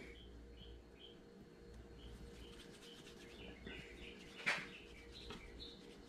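Faint, scattered high chirps of small birds, with one short rustle about four and a half seconds in.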